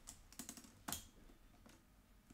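Faint, light plastic clicks and taps of a camera's battery being swapped by hand, the loudest click about a second in.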